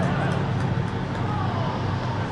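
Open-air ambience at a soccer match: players' distant shouts and calls over a steady low hum, with a few faint knocks in the first second.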